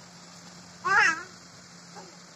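A baby's short high vocal squeal, about a second in, its pitch rising then falling.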